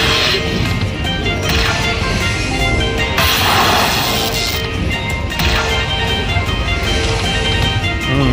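Aristocrat Dollar Storm Emperor's Treasure slot machine playing its hold-and-spin bonus music, with a short whooshing effect at each reel spin. A louder crash-like effect comes about three seconds in as a new coin locks onto the reels.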